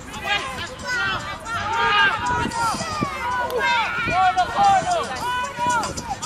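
Several voices shouting and calling out at once, footballers on the pitch and spectators, in overlapping calls with no clear words.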